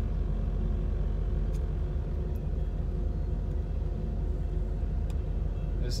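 Steady low rumble heard from inside a stopped car's cabin: a long train passing outside over the car's idling engine.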